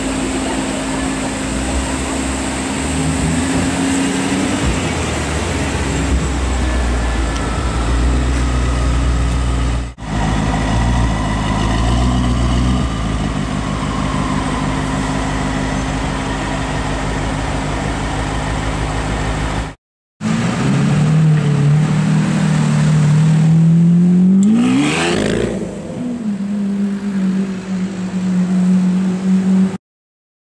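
Hamann-kitted BMW M5's twin-turbo V8 running and blipped through its quad exhaust, in several short cuts with brief breaks. About 25 seconds in, a rev rises sharply and then holds at a steady higher drone.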